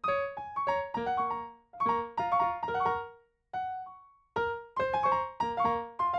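Piano playing in short phrases of quick, overlapping notes. About halfway there is a brief pause in which two single notes sound alone before the playing picks up again.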